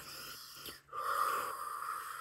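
A woman's breath: a short breath, a brief pause, then a long steady breath blown out through pursed lips, starting about a second in and slowly fading.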